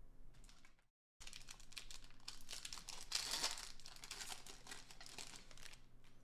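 Plastic wrapper of a Panini Mosaic football card pack crinkling and tearing as it is ripped open by hand. The crinkling starts about a second in, is loudest around the middle and fades near the end.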